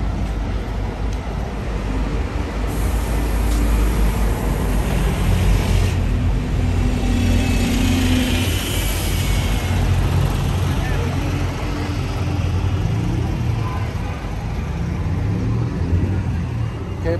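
Road traffic on a town-centre street with a London bus running past close by, its engine a steady low rumble that swells a little in the middle. A high hiss runs from about three to six seconds in.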